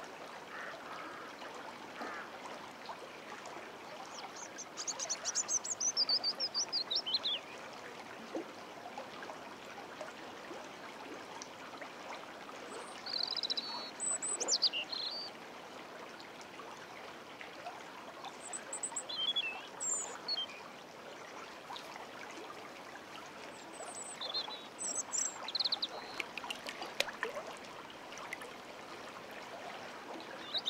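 A river in flood running with a steady rush of water. A small songbird sings short, high phrases about every six seconds, several of them falling in pitch.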